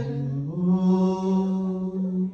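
A low voice chanting long held notes, stepping up to a higher note about half a second in.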